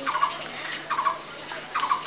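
Birds calling in the background: a few short calls spread across the two seconds.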